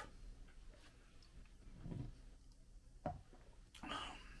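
Quiet room tone with faint handling noise: a soft bump about two seconds in, then two small clicks near the end as a plastic spray bottle is picked up.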